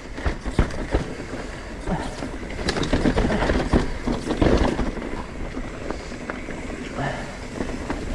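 Mountain bike riding down rough, narrow dirt singletrack: tyres running over dirt and roots with the bike rattling and many sharp knocks and clicks.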